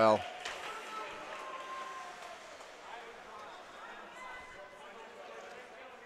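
Quiet indoor ice-rink ambience during play: faint distant voices and the hiss of skates on the ice, with no loud impacts.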